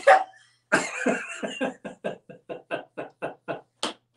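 A woman laughing hard: a rapid string of short 'ha' pulses, about six a second, that gradually fade, ending with a sharp gasping in-breath near the end.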